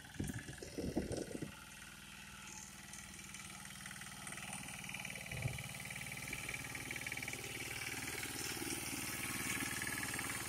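Greaves power weeder's single-cylinder engine running steadily as the walk-behind tiller churns wet soil, growing louder as it comes closer. Irregular low thumps in the first second or so, and one thud about halfway.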